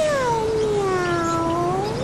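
A cat's long drawn-out meow, one call that slides down in pitch and rises again near the end.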